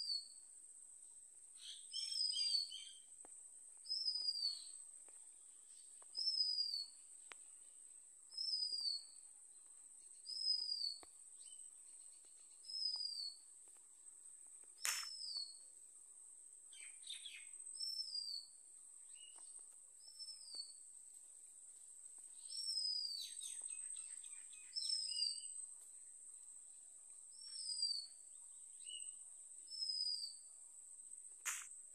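A bird repeating one short, high, down-slurred call about every two seconds, over a steady high-pitched drone. There is a single sharp click about halfway through.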